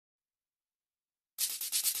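Silence for more than a second, then a fast, even scratching rhythm of about a dozen strokes a second begins: shaker-type percussion opening the karaoke backing track.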